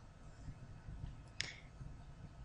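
Faint low room noise with one short, sharp click about one and a half seconds in.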